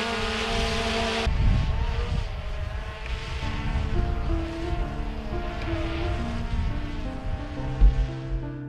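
Quadcopter drone's propellers whining steadily as it hovers, cut off suddenly about a second in. A low rumble follows, and gentle piano music comes in partway through.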